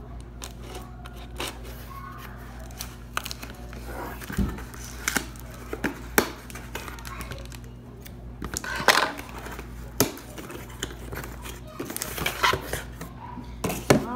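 Small cardboard box being opened by hand: packing tape tearing, cardboard flaps rustling, and a run of sharp knocks and taps as the box is handled.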